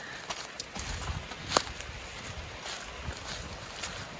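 Footsteps on dry leaf litter and patchy snow, an irregular run of rustles and small clicks, with one sharper click about a second and a half in.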